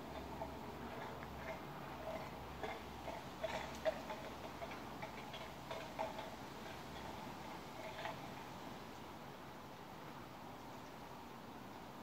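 Faint, irregular small ticks and chirps, scattered through the first eight seconds and then thinning out.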